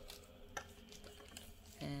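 Faint handling of small plastic roller-ball perfume bottles on a plastic toy chemistry kit, with a few light clicks, the clearest about half a second in.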